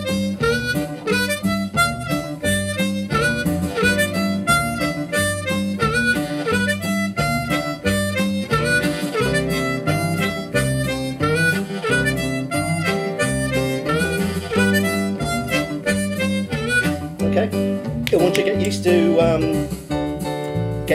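Diatonic blues harmonica playing a slow lick over a two-feel blues backing track with guitar and bass, the track slowed to about 70% of its original speed. The harmonica stops near the end while the backing track runs on.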